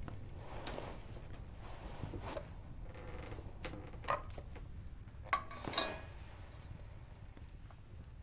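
Quiet handling sounds of a wooden ladle and bowl as porridge is served from a pot: a few soft knocks and scrapes over a low steady background.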